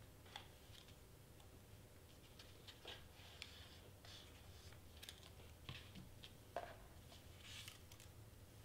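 Faint, scattered small clicks and taps from a hot glue gun and cardstock being handled on a cutting mat, the loudest about six and a half seconds in, with a short paper rustle near the end.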